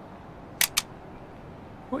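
Two sharp clicks in quick succession, about a fifth of a second apart, about half a second in, over a faint steady room hum.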